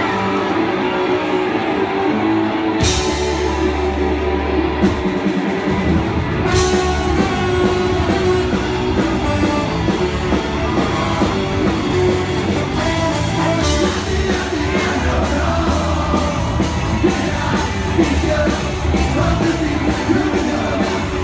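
A ska-punk band playing live and loud: drums, electric guitars, bass, saxophone and trombone, with singing. Cymbal crashes come about three and six seconds in, and a full, steady drum beat drives on from about fourteen seconds in.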